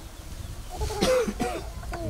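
A person coughing briefly, about a second in.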